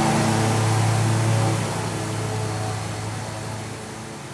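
A steady low machine hum with a hiss over it, loudest in the first second or so, then fading away gradually.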